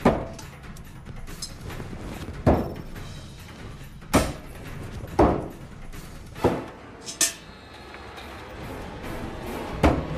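Thrown knives striking a target board one after another: about seven sharp thuds, a second or two apart, over background music.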